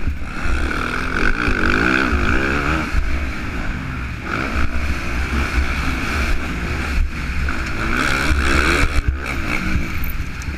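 Yamaha motocross bike engine revving up and down as the rider accelerates and rolls off through the track, heard from on the bike with heavy wind rumble on the microphone.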